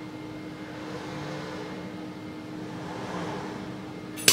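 Robot arm's joint motors whirring as the arm swings through a lifting move, swelling slightly partway through, over a steady hum.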